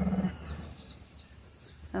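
A small brindle dog growling low and steadily, a warning from a dog that doesn't like play; the growl stops about a quarter of a second in.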